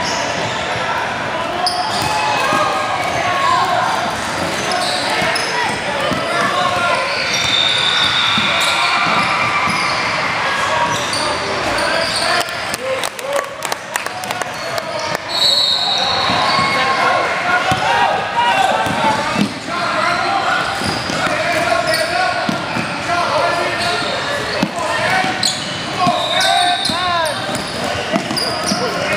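Basketball game sounds in a gym: a ball bouncing on the hardwood, players' footfalls and indistinct shouting from players and spectators, all echoing in the hall.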